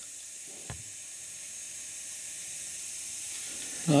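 Trapped air hissing steadily out of the loosened bleed valve on a towel-rail radiator of a home central heating system: the air is still escaping and water has not yet reached the vent. A faint short knock is heard under a second in.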